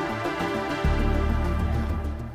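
Background electronic music with a steady beat. A heavy bass line comes in a little under a second in, and the music gets louder.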